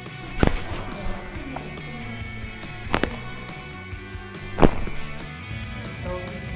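Background music with three sharp cracks during chiropractic manipulation, the last the loudest: joints popping as the spine is adjusted.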